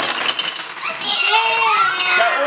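Plastic game blocks clattering onto a wooden table as a tower is blasted over by the game's air-bulb launcher, then a child's voice rising and falling from about a second in.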